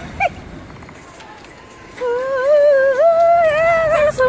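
A woman humming a long, wavering high note that starts about two seconds in, after a brief vocal sound near the start.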